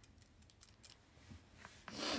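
Faint metallic clicks of a spring-hinged eyelash curler being handled and squeezed, a few in the first second, then a brief hiss near the end.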